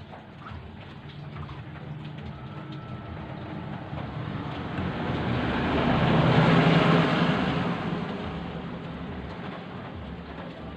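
A motor vehicle passing by: engine and road noise swell over several seconds, peak about six to seven seconds in, then fade away.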